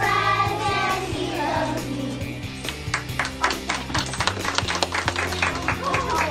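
Children singing along to a played children's song, with a steady bass line underneath; from about two and a half seconds in the singing gives way to quick, repeated hand clapping over the music.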